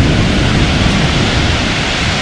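Pacific surf breaking and washing up a pebble beach: a loud, steady rush of water with a deep rumble underneath.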